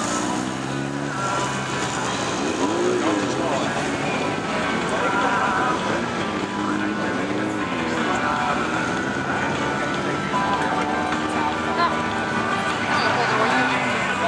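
Several autocross cars' engines revving and pitching up and down through gear changes as they race round a dirt track, one rise and fall following another every few seconds.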